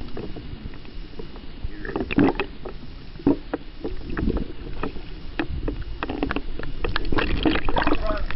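Water noise picked up by a camera underwater: scattered clicks and crackles over a low rumble, getting busier and louder in the last couple of seconds as the camera comes up at the surface.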